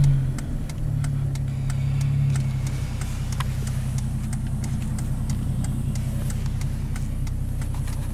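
Truck engine and road noise heard from inside the cab while driving: a steady low drone, a little louder in the first couple of seconds and then settling. Faint, evenly spaced ticks run through it.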